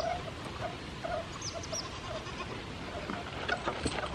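Goat bleating: a string of short, faint calls about half a second apart.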